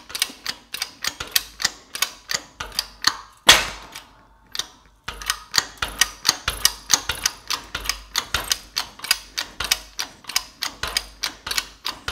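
Shop press being worked to press a bearing into a transfer-case clutch carrier: a steady run of rapid mechanical clicks, about three to four a second, with one louder knock about three and a half seconds in and a short pause after it before the clicking resumes.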